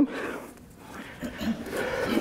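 A spoken word ends right at the start, followed by a quiet stretch in a large hall with faint voices and breathing.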